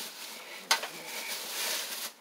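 Thin plastic shopping bag rustling and crinkling as it is handled, with one sharper crackle a little under a second in.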